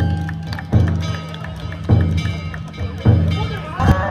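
Danjiri festival music: a large taiko drum struck about once a second, each beat ringing on, with small hand-held gongs (kane) clanging in between.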